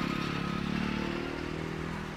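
Small motorbike engine running steadily as the bike rides away, its sound slowly fading.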